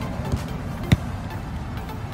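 Background music playing steadily, with one sharp thump about a second in from a football being kicked.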